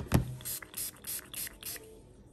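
A knock, then a pump spray bottle of Florida water cologne spritzed several times in quick short sprays.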